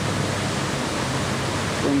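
A steady rushing noise with a faint low hum underneath, even throughout and without a rhythm.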